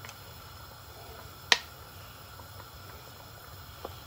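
Low steady hiss from a pan of mussels and cream on the heat, with one sharp click about one and a half seconds in and a smaller tick near the end.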